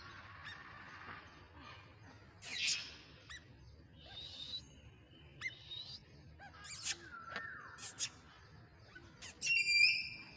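Birds calling: scattered short, sharp chirps and calls over a low background hiss, with the loudest burst of calls near the end.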